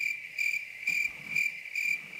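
Cricket chirping sound effect: a steady high trill that pulses about twice a second, starting and stopping abruptly. It is the comic 'crickets' gag for a question met with silence.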